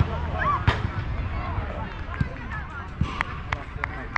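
Players' shouts and calls from across a football pitch, with one sharp knock under a second in and a quick run of sharp clicks near the end, over a steady low rumble.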